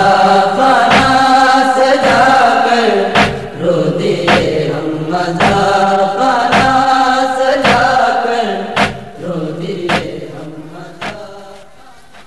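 A nohay, a Shia mourning lament in Urdu, chanted in a slow melody over a steady thump about once a second. It fades out over the last few seconds.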